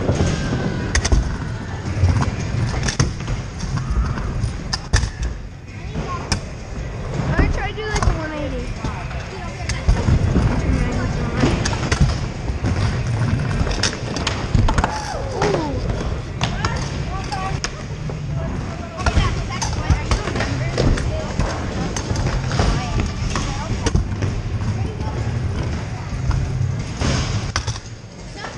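Kick scooter rolling over skatepark ramps and concrete, picked up by a camera on its handlebars: a steady rumble from the wheels with frequent clacks and knocks as it rides over edges and transitions.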